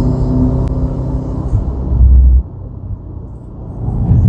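Car engine running under steady load up a grade, with road and wind noise, picked up by a camera mounted on the front of the car. About two seconds in, a heavy low thump comes as the car jolts over a bump. After that the sound drops quieter and duller.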